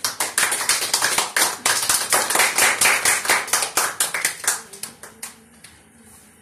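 A small group of people clapping their hands together, a dense patter of many claps that thins to a few last claps and stops about five seconds in.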